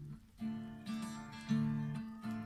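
Acoustic guitar strumming chords accompanying a bard song in a break between sung lines: three strokes about half a second apart, the last the loudest.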